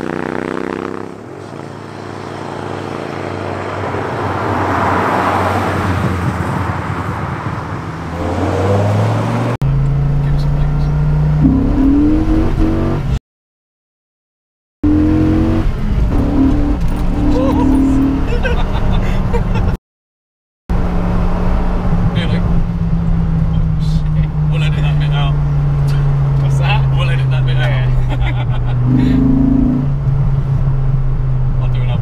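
A road vehicle passes by, its noise swelling and fading, and an engine revs rising as it draws near. Then, inside the cabin of a Dodge Viper GTS, the naturally aspirated V10 pulls up through the revs and settles into a steady drone that slowly sinks in pitch as the car cruises.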